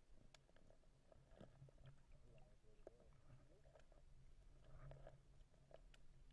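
Faint, muffled underwater sound in murky river water: a low steady hum with scattered soft clicks and knocks.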